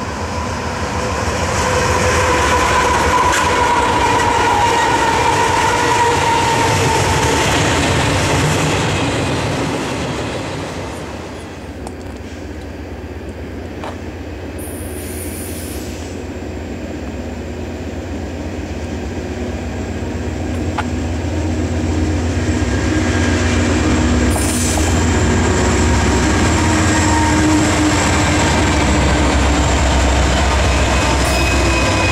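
Diesel freight trains on a main line: the first approaches with a long steady pitched tone through its first ten seconds or so. Then an intermodal train led by GE C40-9W and EMD SD70ACe diesel locomotives approaches, its engine rumble growing louder as the units pass close near the end.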